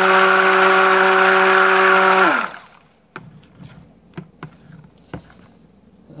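Immersion stick blender running steadily in soap batter, its motor whine dropping in pitch and stopping a little over two seconds in. A few light clicks and taps follow.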